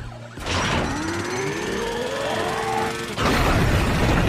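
Cartoon action sound effects over background score: a whine that rises slowly in pitch for about two and a half seconds, then a loud crash and rumble of a wall breaking and debris falling about three seconds in.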